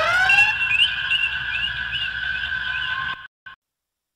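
A closing electronic effect at the end of an album track: a stack of tones glides upward and settles into a steady held chord, with short chirping blips repeating above it. It cuts off suddenly about three seconds in, with one brief blip after, then silence until the next track.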